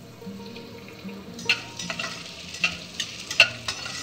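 Cut green beans frying in hot oil in a kadai, with a metal spatula scraping and knocking against the pan several times from about a second and a half in.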